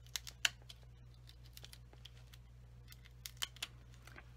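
Quiet, light clicks and taps of card stock and a sheet of foam adhesive dimensionals being handled and pressed into place on a handmade card, with a sharper click about half a second in and a few more near the end, over a faint steady low hum.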